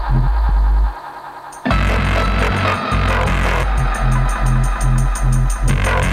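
Electronic dance track with a pulsing bass line. The bass and beat drop out briefly about a second in, then come back with a fast, ticking high percussion pattern.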